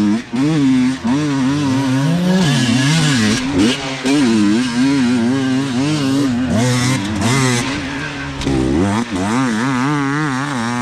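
Enduro dirt bike engine revving hard under load, its pitch wavering up and down every half second or so as the throttle is worked on a steep muddy hill climb, rising again near the end.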